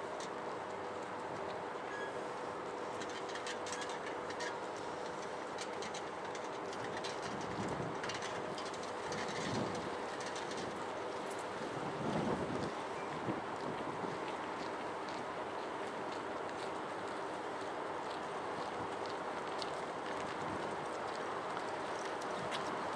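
Helsinki tram standing at a stop, its onboard equipment giving a steady hum with a few faint steady tones. A low rumble swells briefly, loudest about twelve seconds in.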